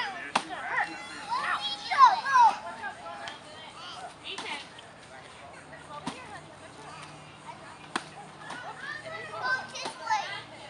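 A plastic toy bat and plastic golf club hitting a hanging piñata: three sharp knocks, one just after the start, then two about two seconds apart in the second half. Young children's voices and shrieks come between the hits.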